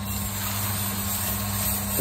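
Green coffee beans being poured from a paper cup into the hopper of a Proaster sample roaster, giving a steady rushing hiss of beans sliding into the drum, over the roaster's low hum.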